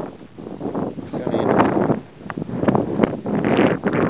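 Wind buffeting the microphone in gusts, a loud uneven rushing that rises and falls.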